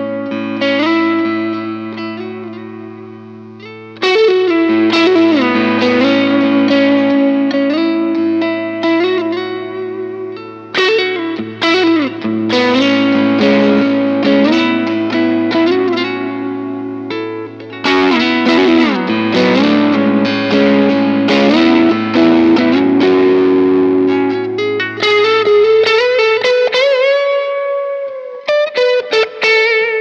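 Electric guitar through a Crowther Hot Cake overdrive pedal set for a light crunch: gain about 10 o'clock, volume about 2 o'clock, presence cranked. It gives a tube-like, squishy tone. He plays chord phrases over a held low note, starting a new phrase about every seven seconds, and ends on a single-note line with bends.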